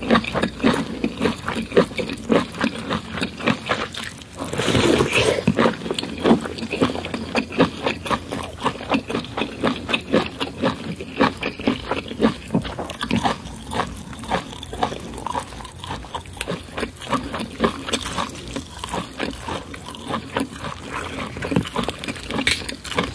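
Close-miked wet chewing and mouth noises of messy eating, corn on the cob and lobster in curry, heard as dense rapid small clicks and smacks with a louder burst about five seconds in. In the second half, hands pulling apart the cooked lobster's shell add cracking and squelching.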